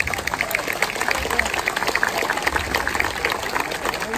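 An audience applauding: dense clapping that starts suddenly and holds steady.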